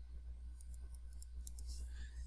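Faint, scattered clicks of a stylus tapping on a tablet screen while writing, over a steady low hum.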